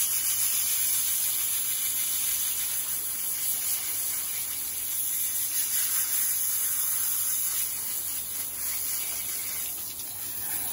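Garden-hose spray nozzle spraying water onto a skinned rabbit carcass, a steady hiss of spray with water splashing off the meat as loose fur is rinsed away.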